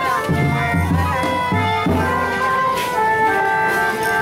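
A school drum band tune: sustained, organ-like melody notes over repeated low drum beats.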